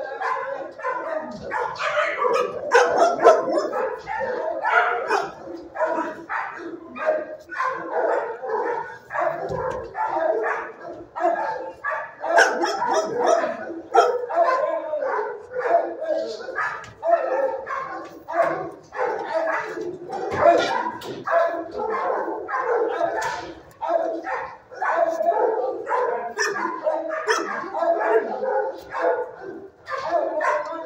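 Many dogs barking at once in a shelter kennel block, with barks and yips overlapping in an unbroken din.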